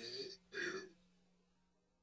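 The last fading note of the song, then a single short throaty vocal sound like a throat clearing about half a second in.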